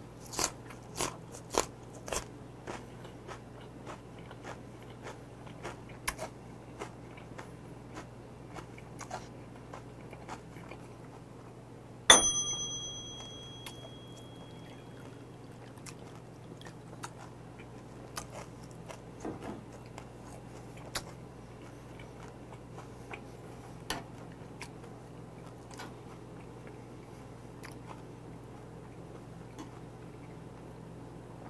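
Close-up chewing of raw gizzard shad sashimi wrapped in raw onion, with crisp crunches in the first few seconds that thin out to quieter chewing. About twelve seconds in, a single sharp glass clink rings out and fades over about a second.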